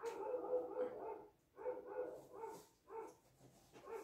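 A woman's soft, high-pitched squeals and giggles of delight, a longer one at the start and then four short ones.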